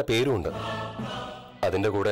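Background music with a held choir-like chord, with a man's voice speaking briefly near the start and again near the end.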